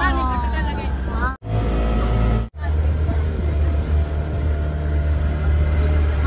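Outboard motor of a small wooden river boat running steadily with a low drone. The sound cuts out abruptly twice in the first few seconds.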